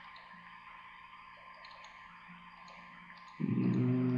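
Faint computer-mouse clicks over quiet room tone, then, about three and a half seconds in, a man's steady held hum, a pondering 'hmm'.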